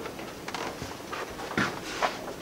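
Footsteps of several people walking along a carpeted corridor: irregular soft steps and scuffs, the loudest about one and a half seconds in, over a faint steady hiss.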